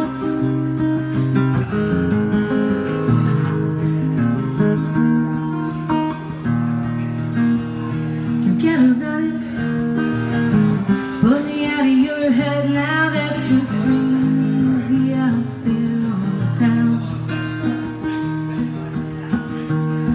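Acoustic guitar strummed in steady chords as the accompaniment to a song. A woman's singing voice comes in over it from about nine seconds in, holding long, wavering notes for several seconds.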